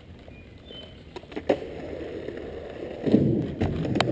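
Skateboard wheels rolling over concrete, growing louder as the board comes closer, with a few sharp clicks early on and a louder rumble near the end.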